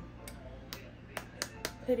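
Sharp clicks and taps of a plastic food-storage container being handled, about five in quick succession.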